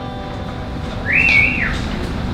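A single sharp whistle of approval from the audience about a second in: it rises, holds briefly and falls. A faint steady hum runs underneath.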